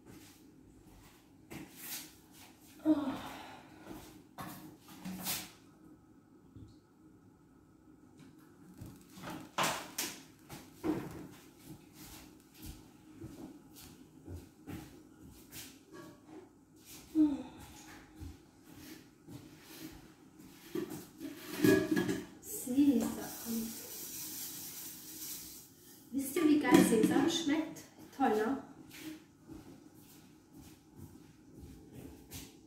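Kitchen handling noises: scattered knocks and clicks of things being moved and set down, with a few short stretches of indistinct voice. A hiss lasts a couple of seconds about three quarters of the way through.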